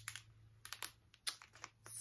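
Plastic packaging of a body scrubber being handled, giving a few irregular sharp clicks and light crinkles.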